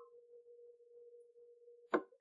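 A faint steady mid-pitched hum with one sharp computer-mouse click near the end.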